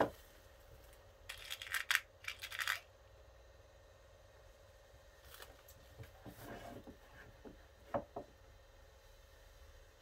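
Felt being handled and worked over a plastic-wrapped hat block: two short rustles a little after a second in, then small scrapes and clicks. A faint steady hum runs underneath for the first seven seconds or so, from the handheld clothing steamer.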